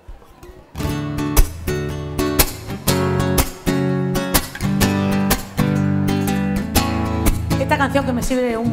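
Acoustic guitar strummed in steady rhythmic chords, starting about a second in after a quiet moment.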